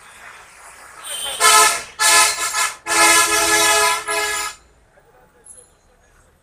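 A vehicle horn honking several times in quick succession, one steady pitch per blast, the longest blast lasting about a second, near the middle of the clip.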